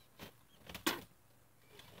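A few short, faint breaths and mouth sounds from a man feeling nauseous after drinking, the sharpest just under a second in.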